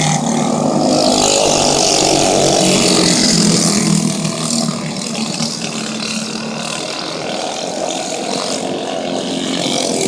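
Several racing go-kart engines running hard as the karts lap the track, the pitch rising and falling with the throttle. The sound is loudest in the first few seconds, drops off in the middle as the karts move away, and builds again near the end as they come back toward the fence.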